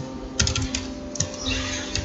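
Computer keyboard being typed on: quick runs of key clicks, several keys at a time with short gaps between.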